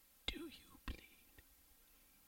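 A person whispering briefly, two soft sounds in the first second, with a faint click about a second and a half in.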